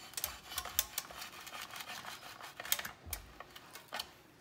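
A knife drawn through the slot of a plastic Pampered Chef Close & Cut slicer, cutting a chicken breast in half: a run of irregular light clicks and scrapes of blade on plastic, easing off about three seconds in.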